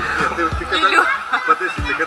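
A person laughing softly in short chuckles over background music.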